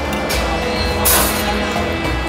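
Background music with a deep bass line and a bright hiss swell about a second in.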